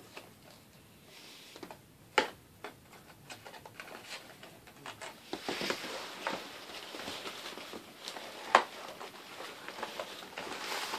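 A small cardboard blind box being worked open by hand: scattered taps and clicks of the cardboard, two sharper snaps about two seconds in and near the end, and rustling and crinkling of the packaging from the middle on.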